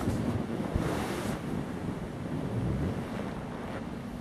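Wind buffeting the microphone: a gusty, rushing noise with a stronger gust about a second in.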